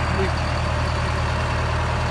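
Detroit Diesel 8V71 two-stroke V8 diesel engine of a 1980 GMC RTS bus idling, a low, even drone that holds steady.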